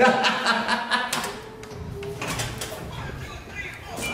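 Indistinct men's voices with a few short knocks.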